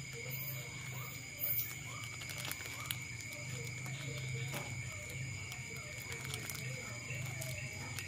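Soft rustling and small crinkling clicks of a clear plastic grafting strip as it is wrapped and tied around a durian graft, with one brief louder rustle about a second and a half in. Under it runs a steady, high chirring of night insects.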